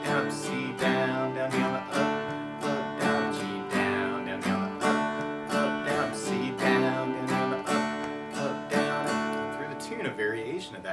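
Acoustic guitar strummed in a steady rhythm of down-down strokes, moving through open G, D and C chords of a simple intro progression.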